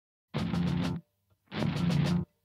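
Metal band opening a song with a stop-start riff: a short burst of heavy music begins about a third of a second in and cuts off dead, and a second burst starts after half a second of silence.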